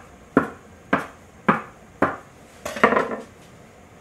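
A knife blade knocking on a wooden board as it cuts a rope of potato gnocchi dough into pieces: four sharp knocks about half a second apart, then a quicker cluster of knocks near the end.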